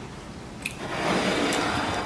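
A rustling, handling noise lasting about a second, starting just under a second in, as a hand holding a burger moves up close to the microphone; a light click comes just before it.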